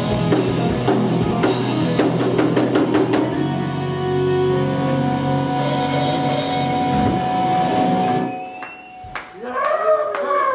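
Live metal band playing loud with a full drum kit; about three seconds in the drums stop and the band lets a held chord ring until it cuts away about eight seconds in, ending the song. A voice shouts near the end.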